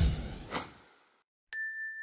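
Added sound effects: a noisy hit with a low boom that fades away over about a second, then, about a second and a half in, a single bright ding that rings on one steady note.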